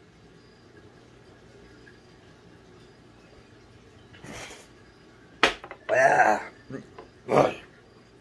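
A man reacting to a shot of strong herbal liquor burning on the way down: after a quiet first half, a breathy exhale, a sharp click, then two loud strained groans near the end.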